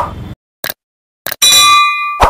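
Subscribe-button animation sound effects: a sharp hit, a couple of clicks, then a bright bell ding that rings for most of a second before another short hit.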